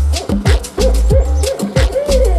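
Deep melodic techno: a pounding kick drum over heavy sub bass, with hi-hats. In the second half a short note, each bending up then down, repeats about three times a second.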